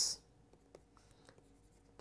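Faint taps and scratches of a stylus writing on a tablet screen, with a few light ticks spread through the quiet.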